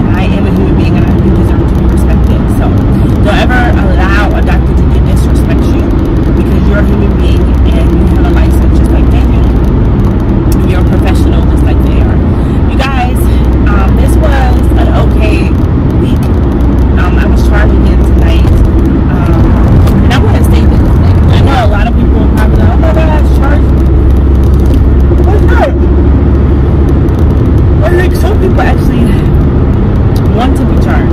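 Steady low road and engine rumble inside a moving car, loud throughout, with a woman talking over it.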